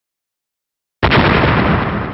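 Explosion sound effect: a sudden loud blast about a second in, then a slow fade.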